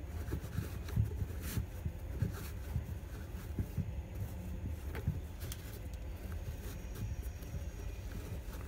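Faint rustling and light scattered ticks of shoelaces being pulled and shifted through the eyelets of a leather sneaker, over a steady low hum.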